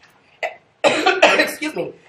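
A person coughing, mixed in with a voice speaking, the coughing bunched into about a second just before the end.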